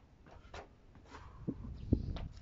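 Light footfalls, then two dull thumps about half a second apart near the end, the second louder: a person landing a jump from a garden bench onto a mattress and stepping off onto the grass.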